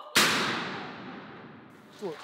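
Howitzer fired in a crew demonstration: one sharp, loud blast just after the start, its echo fading slowly through the concrete gun emplacement.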